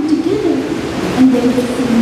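A girl's voice amplified through a handheld microphone, held in a long, smoothly gliding line with few pauses.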